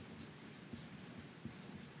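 Felt-tip marker pen scratching across a writing board in short, irregular strokes as Chinese characters are written by hand. The sound is faint.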